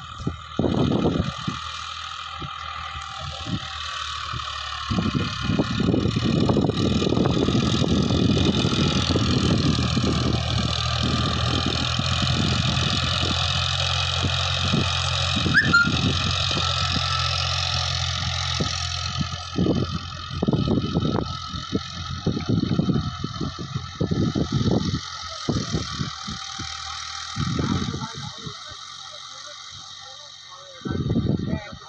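Eicher 551 tractor's 3300 cc diesel engine running under load while it drives a rotavator through the soil, growing louder about five seconds in and fading away in the last third as the tractor moves off. Gusty wind noise on the microphone throughout.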